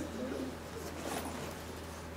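Quiet classroom room tone with a steady low electrical hum, and a brief soft murmur of a voice just at the start.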